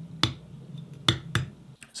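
Hand patting the base of a glazed ceramic plant pot: three short, sharp taps. The pot is being struck as raw material for a kick drum sample.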